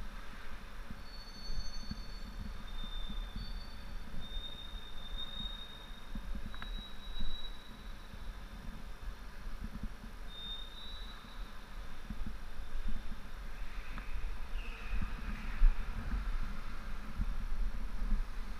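Motorcycle engine idling: a low, uneven rumble, with faint high squeaks in the first few seconds and a couple of light clicks.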